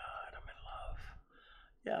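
A man whispering a few breathy, unvoiced words or sounds, then falling nearly quiet before normal speech resumes at the very end.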